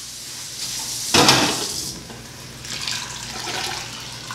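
Water poured from a glass measuring jug into an Instant Pot's inner pot over dried pinto beans, splashing loudest about a second in, then a softer pour near the end.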